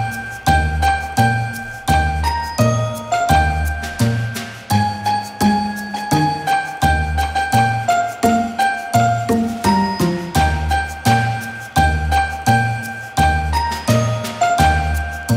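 Background music: a bell-like, tinkling melody over a steady, even beat.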